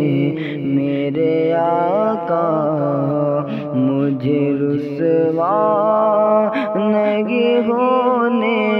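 A man's voice singing a naat in long, wordless sliding notes between lines of text, with echo added to the voice.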